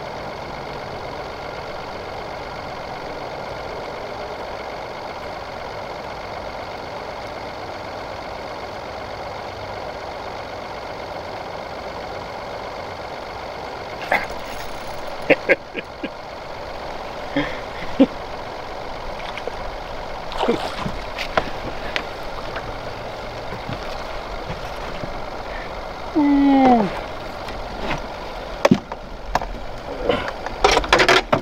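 Steady electric hum of a small boat's bow-mounted trolling motor running. In the second half come scattered clicks and knocks from reeling in and handling a fish.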